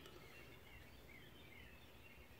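Near silence: faint room tone, with a few faint high chirps in the background.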